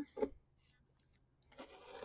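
Mostly near silence, then about one and a half seconds in a faint, rising scratchy hiss of a rotary cutter blade beginning to roll through quilted fabric along an acrylic ruler's edge.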